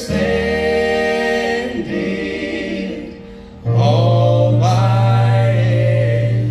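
Church worship band with voices, guitars and keyboard holding the long closing notes of a gospel hymn: one held chord fades away about halfway through, and a new sustained chord with a strong low bass note comes in a little after.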